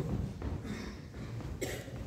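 Chalk writing on a blackboard: quiet scraping and taps, with a short louder burst near the end.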